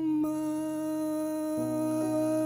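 Male voice humming one long, steady note over piano accompaniment. The piano changes chord about one and a half seconds in.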